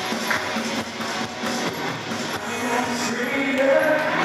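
A live praise band playing a worship song with a steady beat, and voices singing the melody coming in toward the end.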